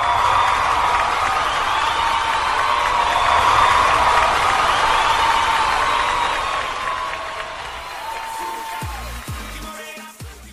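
A crowd cheering and applauding with music underneath, fading out over the last few seconds.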